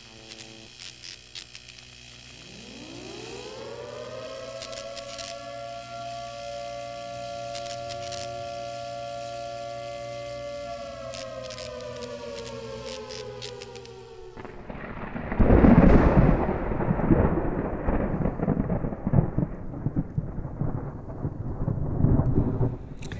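Intro sound effects: a siren-like synthetic tone rises in pitch over a couple of seconds, holds steady with glitchy clicks above it, then sags slightly. About 14 seconds in it cuts off suddenly, and a loud thunder rumble with a rain-like hiss takes over and runs on.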